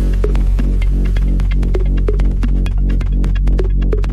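Progressive house music from a DJ mix: a heavy, sustained deep bass drone under layered synth tones, with steady, fast ticking percussion.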